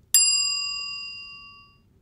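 Notification-bell sound effect: one bright, metallic ding, struck once just after the start and ringing down over about a second and a half.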